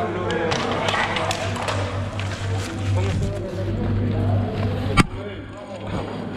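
Rescuers talking unclearly while handling an aluminium scoop stretcher, over a steady low hum; small clicks and knocks throughout, and a single sharp, loud click about five seconds in.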